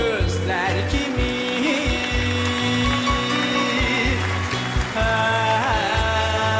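A male singer sings a song with orchestral accompaniment: held sung notes with vibrato over sustained strings and a steady, regular bass beat.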